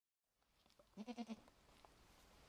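Young raccoon giving a short bleat-like call of four quick pulses about a second in, with faint clicks afterwards.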